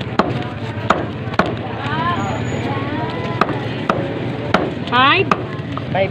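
Meat cleaver chopping raw chicken on a round wooden chopping block: a series of sharp chops, irregularly spaced, with a pause of about two seconds partway through. A voice calls out in the background near the end.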